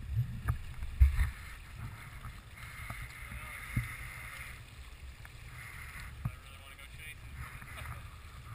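Flowing river water sloshing and splashing against a camera held at the surface, with an uneven low buffeting rumble and a few sharp knocks, the loudest about a second in.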